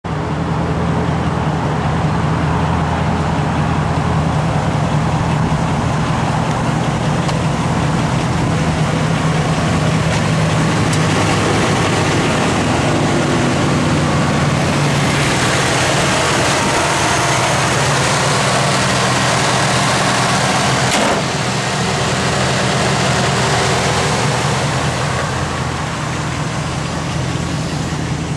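The 2005 Dodge Ram 1500's 5.7-litre HEMI Magnum V8 idling steadily, with one sharp click about three quarters of the way through.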